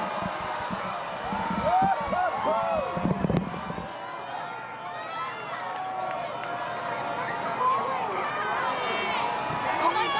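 A large crowd cheering and shouting at the start of totality in a total solar eclipse, many voices overlapping, loudest in the first few seconds.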